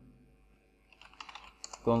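Typing on a computer keyboard: a quick run of key clicks starting about a second in.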